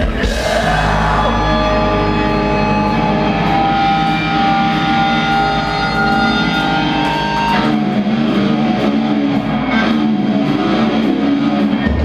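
Live metalcore band playing an instrumental passage: distorted electric guitars, bass and drums. A chord is struck at the start and held notes ring out for several seconds. About seven and a half seconds in, the full band comes back in with a denser riff and steady cymbal hits.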